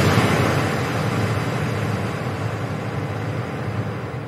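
A rushing, noise-like whoosh sound effect of an animated title intro, slowly fading away.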